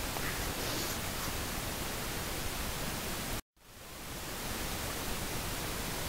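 Steady hiss of a voice recording's background noise between sentences. About three and a half seconds in it cuts out to dead silence for a moment, then swells back in over about half a second, as at a splice between recorded segments.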